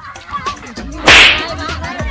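A single sudden splash of water about a second in, the loudest sound here, as a body hits the pond, with children's voices around it.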